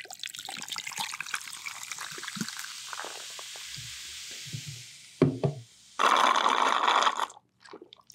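A drink poured from a can into a glass right at the microphone, with a steady hiss and fine crackle. A few clicks follow, then a louder rush of noise lasting about a second near the end.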